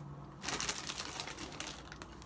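Plastic packaging crinkling as it is handled: a dense run of crackles starting about half a second in and fading near the end.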